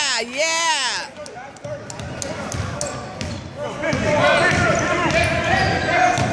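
Basketball on a gym's hardwood court: a spectator's loud call with sweeping pitch at the start, then the ball bouncing, with sharp knocks through the middle, and several spectators calling out from about four seconds in, in a large echoing hall.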